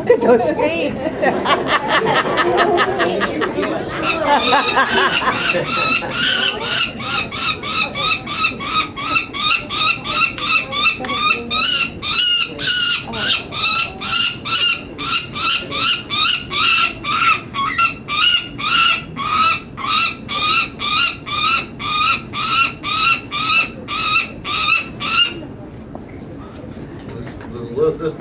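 Peregrine falcon chick calling over and over while being held for leg-banding, short harsh cries about two a second, a protest at the handling. The calling stops a couple of seconds before the end.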